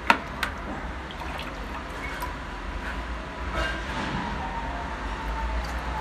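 Water splashing and trickling as a small plastic scoop is dipped into a bucket and poured over a plastic toy ride-on car, with two sharp knocks near the start.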